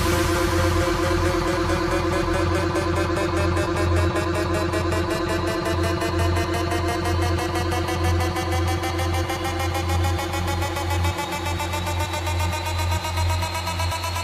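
Electro house build-up: a rapidly pulsing synth over a steady bass, with synth lines slowly rising in pitch throughout.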